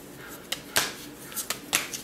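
Cards being handled on a table: several sharp clicks and snaps, the strongest a little under a second in and again near the end.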